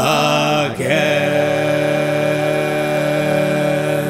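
A man singing a Scottish folk lament: a short phrase with sliding pitch, then one long held note from about a second in to the end.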